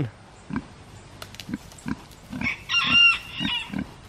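Pigs grunting in short, regular low grunts, a few a second, as they root in the dirt. A higher-pitched call lasting about a second rises over the grunts about two and a half seconds in.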